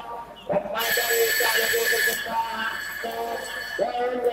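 A man's voice over public-address loudspeakers, heavily echoing, with the hubbub of a large crowd underneath. The voice drops out briefly just after the start, then carries on.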